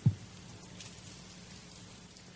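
Quiet room tone with a faint steady hum during a pause in a man's speech, opening with one brief, low, falling vocal sound.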